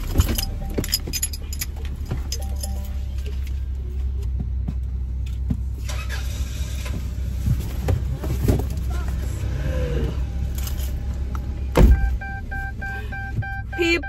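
Inside a car with the engine running: a steady low hum under small rattles, clicks and rustles as cardboard package envelopes are handled. There is one loud thump about twelve seconds in.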